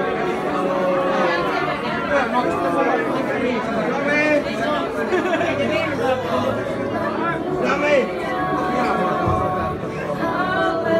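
Audience chatter, several voices talking over one another, with music playing underneath; held musical notes come through more clearly near the end.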